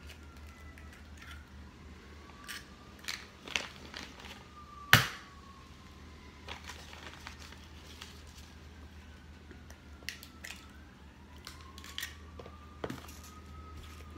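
Eggs being cracked one after another against a plastic mixing bowl: scattered sharp taps and shell cracks, the loudest about five seconds in.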